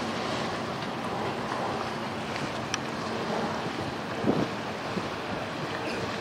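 Wind buffeting the microphone over river water, with the faint steady hum of a boat engine underneath. A sharp click comes near the middle and a brief low thump about four seconds in.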